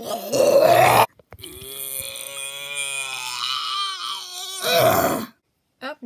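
A person's exaggerated vocal imitation of vomiting: a harsh retch about a second long, then a long groaning, gagging moan that ends in another loud retch.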